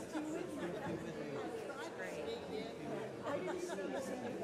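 A congregation chatting and greeting one another: many voices talking at once, overlapping in a large hall.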